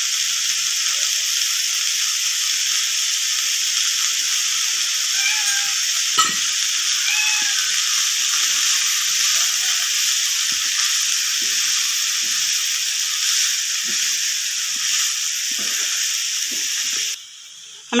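Shredded vegetables and grated coconut sizzling steadily in a non-stick pan as a wooden spatula stirs them, with soft scrapes and one sharp knock about six seconds in. The sizzle cuts off suddenly near the end.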